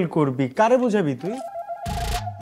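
Speech for the first second and a half. A steady held musical tone then comes in, and a sudden hit just before the end leads into background music.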